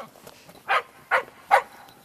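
Black standard schnauzer search-and-rescue dog barking three short times, about 0.4 s apart, at the spot where a hidden person lies under the snow: a bark alert marking the find.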